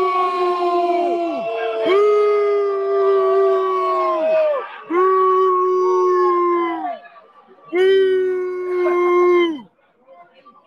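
Men booing loudly, a run of long drawn-out boos of about two seconds each, every one sinking in pitch as it trails off, with two voices overlapping at times.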